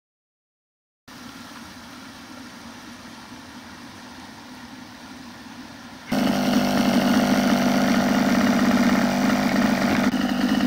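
A small petrol engine idling steadily: faint for the first few seconds, then much louder and closer from about six seconds in.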